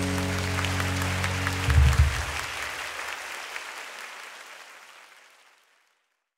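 The band's final held chord of a live acoustic ballad dies away, closing with a low thump just under two seconds in, while audience applause rises over it and then fades out near the end.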